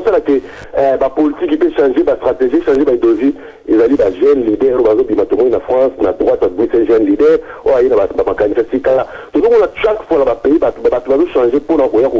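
A caller talking without pause over a telephone line, the voice sounding thin and narrow.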